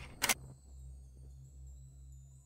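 Faint, steady, low background music drone, with one sharp click about a quarter second in.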